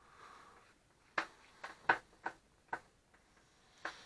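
Handling noise from a corded rotary tool being assembled: a soft rustle, then a handful of light, irregular clicks and taps as its parts and flexible shaft are screwed and fitted together.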